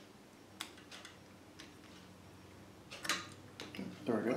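Light clicks and taps of a screwdriver and small valve parts being handled at a brass backflow preventer, a handful of separate ticks with a louder cluster about three seconds in.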